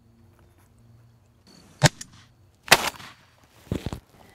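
A sharp crack, then under a second later the louder blast of a Browning Maxus shotgun with a short echo: the shot that drops a Rio Grande gobbler at the decoy.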